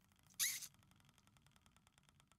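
Faint, rapid ticking of an online mystery box prize wheel's spin sound effect, about ten ticks a second, with one short, louder squeak about half a second in.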